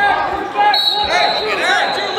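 Athletic shoes squeaking in short, quick chirps on a gym mat and floor, with voices around them in a large gym hall. A thin, high steady tone comes in just under a second in.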